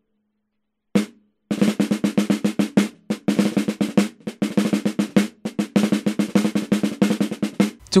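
Snare drum, fitted with a dampening ring so its sound is short and tight, played back dry through a cheap Akai ADM 40 dynamic microphone set at about 45 degrees, 4 cm from the drum's edge. A single hit about a second in, then from about a second and a half a long run of rapid, roll-like strokes that stops just before the end.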